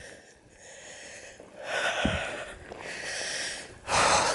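A person breathing hard while walking: two long, noisy exhales of about a second each in the second half, with a soft low thud between them.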